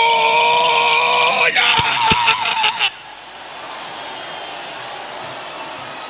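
A voice shouting in long, high, wavering held cries, which cut off suddenly about three seconds in. After that comes the steady murmur of a large congregation of worshippers.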